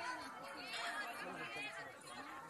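Several people chattering at a distance, their voices overlapping with no words clear.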